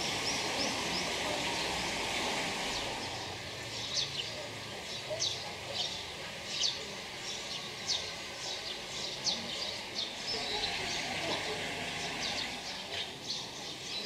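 Small birds giving short, high chirps, about one a second from about four seconds in, over a steady outdoor background hiss.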